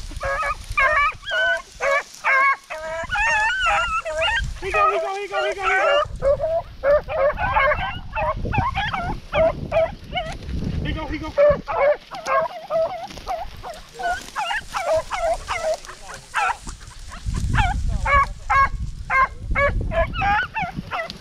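A pack of beagles baying on a rabbit's trail, with many short, overlapping, high yelping bawls in quick succession throughout. Low rumbling noise on the microphone comes and goes about halfway through and again near the end.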